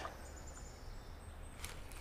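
Quiet outdoor background with a low rumble, a faint high thin tone in the middle and a soft click near the end.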